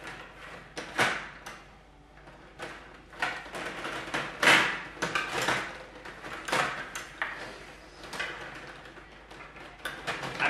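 Stiga Play Off rod table hockey game in play: the steel rods slide and spin, and the plastic players clack against the puck and the table in irregular clattering bursts, the loudest about one second in and again around the middle.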